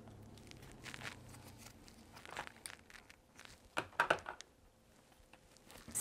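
Faint crinkling and rustling of a clear cellophane treat bag and cardstock as hands press a paper bow onto the bag's topper, in a few short scattered crackles, the loudest about four seconds in.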